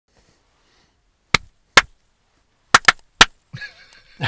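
Five short, sharp clicks, spaced irregularly over about two seconds after a quiet opening second.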